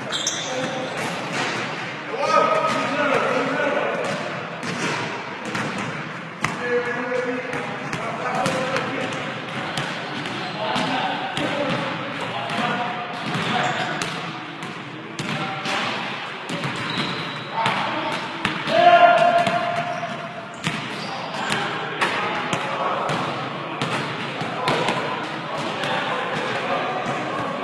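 Basketballs bouncing on a hardwood gym floor during a pickup game: repeated dribbles and thuds throughout, mixed with players' indistinct shouts and calls.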